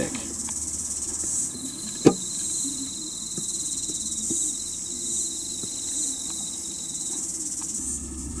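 Insects trilling in the background: a high, steady shrill that swells and fades roughly once a second, with a faint thin whine through the middle and a single sharp click about two seconds in.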